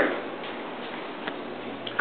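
A few faint, irregularly spaced ticks over steady low room noise in a small office.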